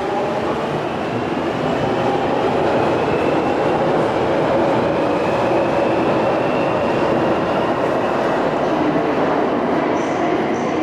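London Underground 1996 stock deep-tube train accelerating out of the platform: the GTO inverter propulsion whines, rising slowly in pitch over a steady rumble of wheels on rail.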